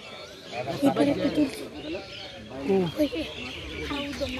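Voices of several people talking, loudest about a second in and again near three seconds in.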